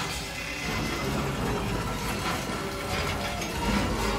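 A film soundtrack played over a 7.2.4 Dolby Atmos home-cinema speaker system and heard in the room: a dense mix of action sound effects and music, with no dialogue.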